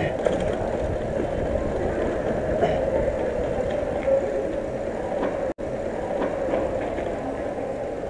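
Mountain bike rolling on concrete, with wind rushing on the microphone: a steady noisy rush. The sound cuts out completely for a moment a little past halfway.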